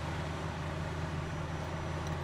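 Heavy diesel machinery, an excavator and the truck it is unloading, running at a steady, unchanging idle-to-working speed.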